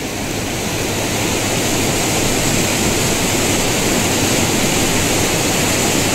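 Floodwater from torrential rain rushing steadily through a breached road, a continuous loud torrent of water.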